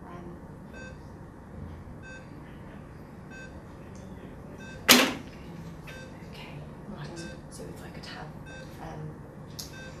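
Patient monitor's pulse-oximeter beeping once about every 1.3 seconds, in time with a slow pulse of about 46 beats a minute. A sharp, loud knock sounds about five seconds in.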